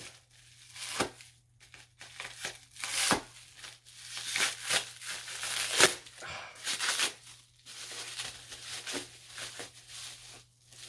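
Packing wrap being torn and crinkled off a small package by hand: irregular rustling and tearing with several sharper crackles.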